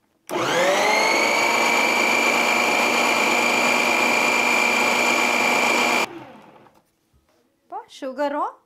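Kitchen mixer grinder motor starting, spinning up quickly to a steady high-speed whine while blending cake batter, running for about six seconds, then switched off and dying away.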